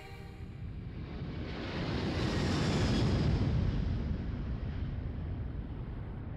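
Jet aircraft flying overhead: a steady roar that builds to its loudest about three seconds in, then slowly fades, with a faint high whine inside it.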